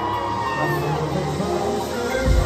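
Live pop concert music in a large hall, heard from the audience: a high, held sung note slowly falls in pitch over sustained lower accompaniment.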